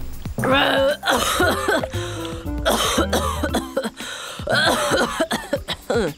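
A cartoon dinosaur character's voice coughing and hacking in about four short bursts over background music: a roar that comes out as coughs, from a faulty "roar box".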